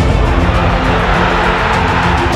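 Music playing as a soundtrack, loud and steady.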